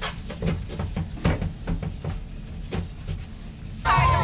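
Toilet being scrubbed by a rubber-gloved hand: irregular rubbing and wiping strokes, two or three a second, over a low steady hum. Near the end it is cut off by a cheering crowd and music.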